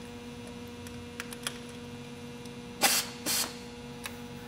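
Steady electrical hum with a few faint clicks as the drill and microstop countersink are handled, then two short hissing bursts about three seconds in.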